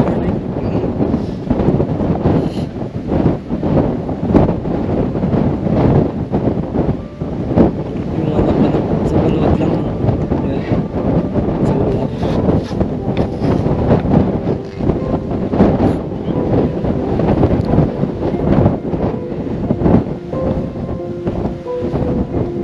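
Strong wind buffeting the microphone: a loud, uneven rumble that surges and drops in gusts.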